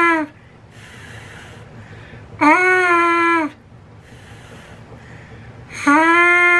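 A trumpet mouthpiece played on its own with the lips: steady buzzed notes of one pitch, each about a second long, one ending just after the start, one in the middle and one beginning near the end. Between them comes soft breathy blowing through the mouthpiece without a buzz, the relaxed lip shape that lets the note come out without pushing.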